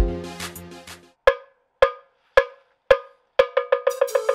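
A loud low musical hit that fades within a second, then a clapperless iron bell (ogene) struck with a stick: four ringing strokes about half a second apart, then quickening into a fast run of strikes, about seven a second, near the end.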